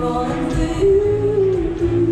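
A woman singing long held notes that slide slightly between pitches, accompanied by her own acoustic guitar, in a live solo pop-song performance.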